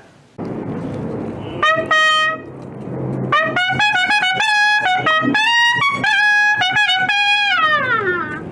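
Herald trumpet sounding a fanfare over rope-tension field drums: one held note, then a run of short notes, the last sagging down in pitch near the end.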